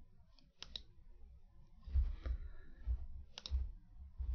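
Two computer mouse clicks, each a quick press and release, one just under a second in and one about three and a half seconds in. Under them are soft low thuds, the loudest about two seconds in.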